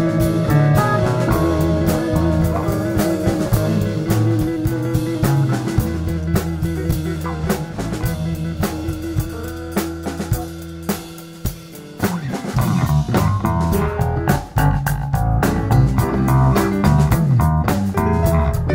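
A live rock band plays an extended jam on keyboard, electric guitars and drum kit. About eight seconds in the band thins to a quieter passage and the bass drops out. About twelve seconds in the full band and drums come back in.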